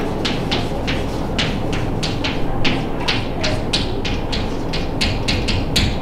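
Chalk writing on a blackboard: a quick, irregular run of short taps and scrapes, about three or four a second, over a steady low room hum.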